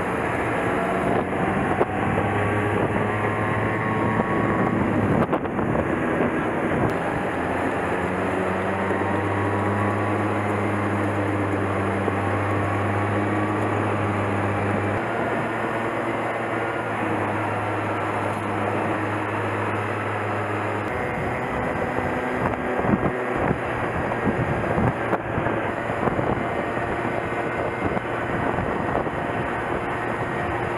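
Street go-kart's small engine running at road speed, heard from on board, with wind blowing on the microphone. The engine note holds steady for stretches and changes pitch about halfway through and again about two-thirds of the way through.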